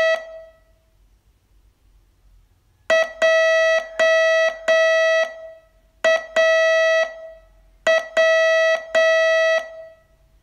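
Morse code sent slowly as a steady, buzzy single-pitched tone for a receiving test. A dash ends just after the start, then after a long gap come three characters, each a short dot followed by long dashes (three dashes, then one, then two), with wide gaps between characters.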